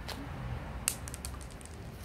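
A small stone thrown too hard onto a concrete path: a sharp click as it lands about a second in, then a few lighter clicks as it bounces and skids on.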